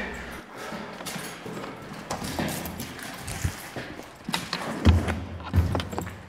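Hurried footsteps with bumps of a handheld camera: a string of irregular short thuds, the loudest about five seconds in.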